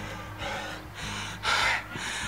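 A man gasping for breath, three heavy breaths with the loudest about one and a half seconds in: he is exhausted after hard running. Background music with steady low notes plays underneath.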